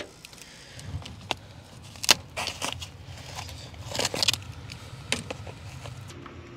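Hands working on outdoor water pipes: scattered clicks, scrapes and crackly rustles of pipe insulation and heat tape being handled, with louder rustles about two and four seconds in, over a low steady hum.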